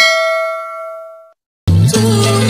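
A notification-bell sound effect: a sudden bright bell ding that rings on and fades, cutting off after about a second. Music starts near the end.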